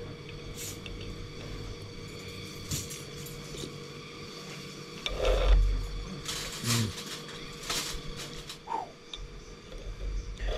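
Scattered light clinks and knocks of a spoon against a bowl during a meal of noodle soup, with one louder, duller thump about five seconds in.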